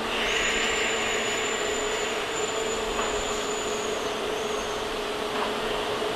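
Electric train standing at the platform: a steady mechanical hum with a brief hiss of air in the first second. A thin high whine runs from just after the start until almost five seconds in.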